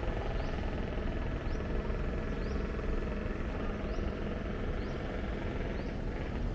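Steady outdoor background rumble with a faint high chirp repeating about once a second.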